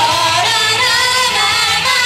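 Two young women singing an upbeat J-pop idol song into handheld microphones over a pop backing track, amplified through stage PA speakers.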